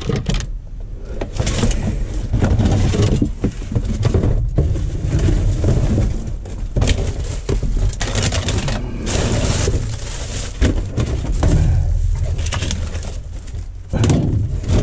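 Rummaging through rubbish in a metal skip bin: irregular rustling and clattering of paper, cardboard and plastic items being pushed about by gloved hands, over a steady low rumble.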